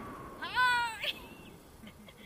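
A person's high-pitched whoop of excitement, one call of about half a second that rises and then holds, over faint wind noise.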